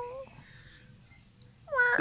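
Domestic cat meowing: one call trails off right at the start, then it is nearly quiet until another drawn-out call begins near the end.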